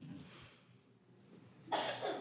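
A person coughing, one short cough near the end, over faint room noise.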